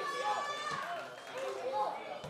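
Footballers' voices shouting and calling out at once as a corner is swung into a crowded goalmouth, with no commentary.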